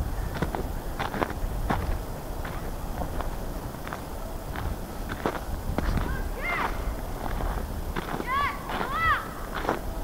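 Footsteps crunching in packed snow at a steady walking pace, about two steps a second. A few short, high calls that rise and fall can be heard in the distance in the second half.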